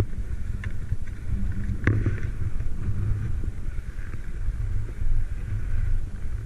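Wind buffeting an action camera's microphone on an open snowy ridge, a steady low rumble with some hiss, broken by a single sharp knock about two seconds in.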